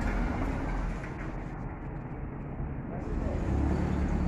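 Cars driving past on a street close by, their engines running; one engine hum grows louder near the end as a car comes alongside.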